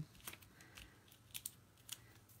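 Near silence broken by a few faint, scattered clicks and rustles of card stock and small paper-craft pieces being handled by hand.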